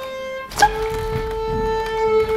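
Solo violin playing long bowed notes. One note fades out, then a new note starts sharply about half a second in and is held steadily.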